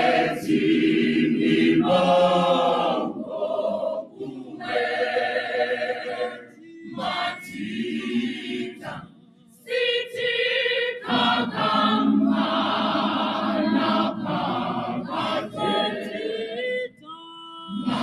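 Mixed men's and women's gospel choir singing a cappella in full harmony, in phrases with short breaks between them. The sound nearly drops out about nine seconds in before the whole choir comes back in, and a thinner, single voice line is heard briefly near the end.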